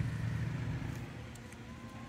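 Quiet outdoor background: a low rumble that fades over about the first second, under a faint even hiss, with a faint thin tone in the second half.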